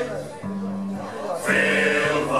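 Male sailors' shanty choir singing with band accompaniment. The voices drop back to a softer held passage between phrases, and the full choir comes in again about one and a half seconds in.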